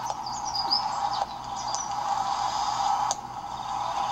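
Birds chirping in short high calls over a steady noise, with a few sharp clicks where the recording cuts.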